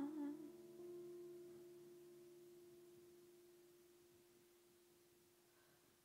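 The tail of a sung prayer melody ends at the very start, leaving one held instrumental note with faint overtones. It fades slowly over about five seconds into near silence.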